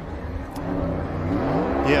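NASCAR Cup Series Chevrolet stock car's V8 engine revving up, its pitch rising steadily over a low rumble.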